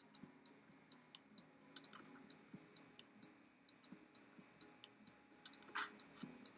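Light, irregular clicking at a computer, roughly three clicks a second, as currency charts are navigated.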